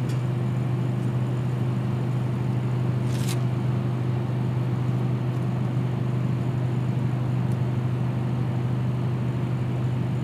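Steady low machine hum holding one pitch with a few overtones, with a brief scrape about three seconds in.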